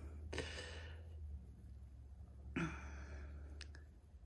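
A person's quiet, breathy sighs, two of them, the second about two and a half seconds in, over a steady low hum. A couple of faint clicks come near the end.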